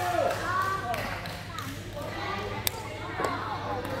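A badminton racket striking a shuttlecock: one sharp crack about two and a half seconds in, with a few fainter knocks around it, over people's voices.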